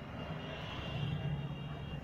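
A steady low engine drone that grows a little louder about a second in, with a faint high whine above it.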